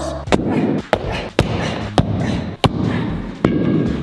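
Sledgehammer striking a pair of glued-together shoes: six heavy blows, one every half second to a second.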